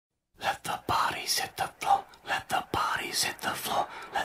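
A voice whispering in quick short phrases, starting about a third of a second in.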